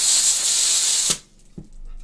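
Green gas hissing loudly from a NUPROL 2.0 can into the fill valve of an Airsoft Innovations Master Mike 40mm grenade shell as it is gassed up, cutting off suddenly about a second in. A light knock or two follows.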